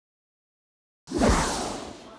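Silence for about a second, then a video-editing whoosh sound effect that starts suddenly, sweeps downward in pitch and fades out.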